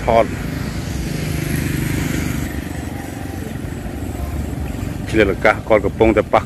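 A motor vehicle passes on the road, its engine hum swelling about a second in and fading away over the next few seconds, over steady street noise.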